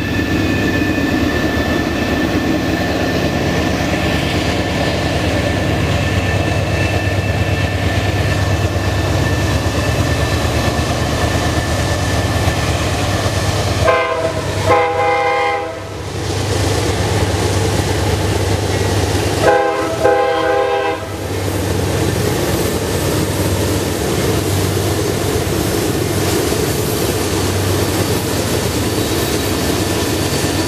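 Norfolk Southern freight train's diesel locomotives running with a steady low rumble as they approach. Their horn sounds twice near the middle, each time a chord of several notes lasting about two seconds, the two blasts about five seconds apart.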